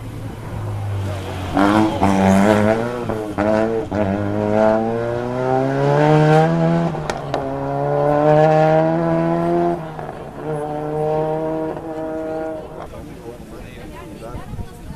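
Rally car engine accelerating hard through the gears, its pitch climbing in steps broken by quick gear changes, then dropping sharply as the car passes and fading away.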